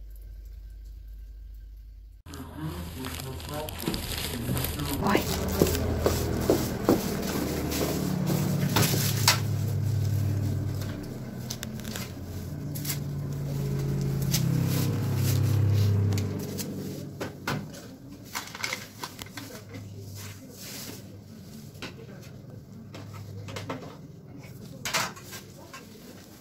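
Indistinct, low voices in a small room, with scattered clicks and rustling from handling. The sound changes suddenly about two seconds in, after a brief low hum.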